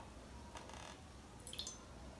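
Faint wet sounds of a champagne biscuit being soaked in a shallow glass dish of milk and lifted out, with a short drip of milk about one and a half seconds in.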